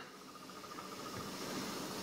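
Faint steady hiss of room tone with a faint high steady tone, and no distinct sound events.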